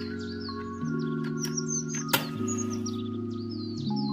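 Soft background music of held chords with birds chirping over it. About two seconds in, a match is struck on a matchbox: one sharp scratch and a brief hiss as it flares.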